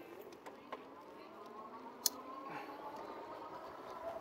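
Electric bike hub motor whining as the RadMini Step-Thru picks up speed, its pitch rising steadily and then levelling off. A few sharp ticks sound over it.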